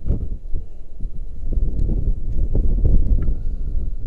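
Wind buffeting the microphone of a body-mounted camera high on an exposed structure: an uneven low rumble that swells and eases, with a few faint rustles and knocks from gloves and harness gear.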